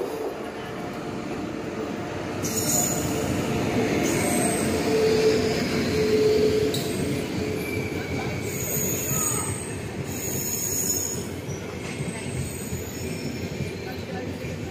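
Express passenger train's coaches rolling past close by as it comes into the station: a continuous rumble and clatter of wheels on the rails, loudest a few seconds in. Thin high squeals from the wheels and brakes come and go through the middle as the train slows to arrive.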